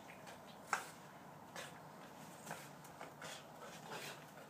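Boston terrier making short, sharp noises roughly once a second, the loudest about three-quarters of a second in.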